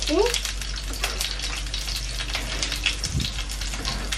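Sliced mushroom frying in hot olive oil in a pan, a steady crackling sizzle. A short rising vocal sound comes right at the start.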